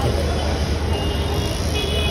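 Busy street traffic noise: a steady low rumble of vehicles and general city din, with no distinct single event.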